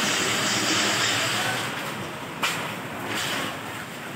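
Storm wind blowing in a steady rush of noise that eases towards the end, with one sharp knock about two and a half seconds in.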